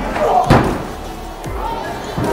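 A single loud slam about half a second in, from an impact in a wrestling ring, with a short ringing tail; voices are heard around it.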